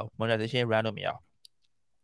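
A man speaking into a close podcast microphone for about the first second, then a single brief faint click.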